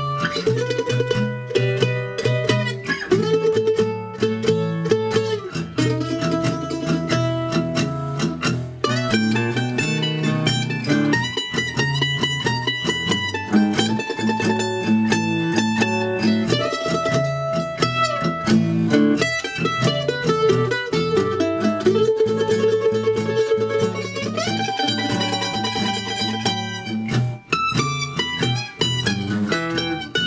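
Ellis F-style mandolin improvising blues lines over a 12-bar blues in E, with a backing track of lower bass and rhythm notes underneath, about a second and a half to the beat.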